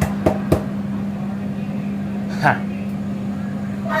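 A steady low kitchen hum, with two sharp knocks in the first half-second as a plastic squeeze bottle is handled and shaken over the pan.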